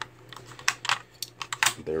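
A run of small, sharp plastic clicks and taps as the battery cover on the back of a digital weather station is opened and its AA batteries are taken out.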